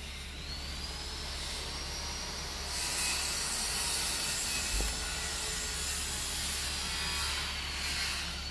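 Dump truck tipping a load of road base gravel: a steady rushing, scraping hiss of gravel sliding out of the raised bed, which builds about three seconds in, over a low engine rumble and a faint high whine that rises and later falls.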